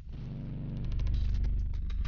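Opening of a promotional video's soundtrack: a deep, low drone swells up out of silence over about a second, with a run of quick, sharp clicks laid over it.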